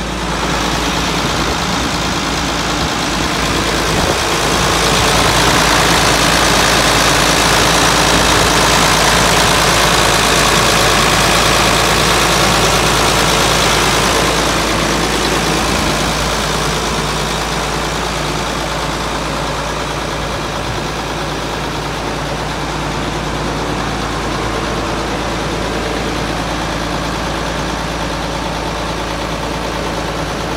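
Diesel engine of a John Deere 5460 self-propelled forage harvester running steadily, louder from about four seconds in and easing off again after about fourteen seconds.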